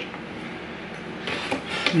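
Quiet handling noise of small plastic parts on a tabletop: the fan remote set down and the RGB hub picked up, with a brief soft rustle in the second half.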